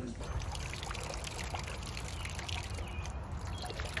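Water running steadily from the spout of a hand-operated water pump and splashing down.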